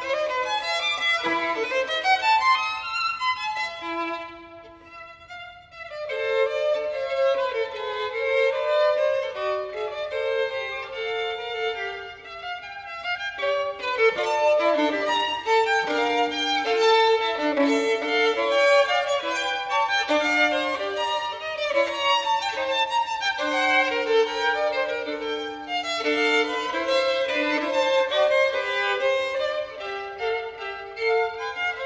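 Solo violin played unaccompanied: rapid passages of many short notes, dropping quieter for a moment about four seconds in before picking up again.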